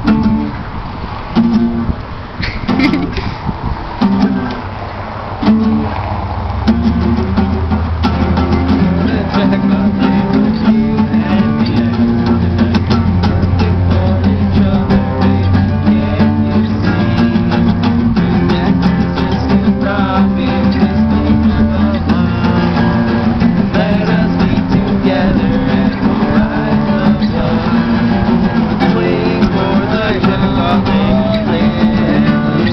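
Several acoustic guitars strummed together in an instrumental passage. A few separate chords are struck with short gaps over the first six seconds or so, then the strumming runs on without a break over low bass notes.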